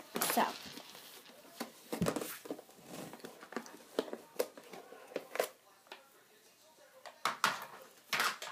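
Loose wax crayons clicking and clattering against each other and a plastic storage tub as a hand handles the tub and rummages through it: a scatter of sharp clicks, dying away about six seconds in, with a couple more near the end.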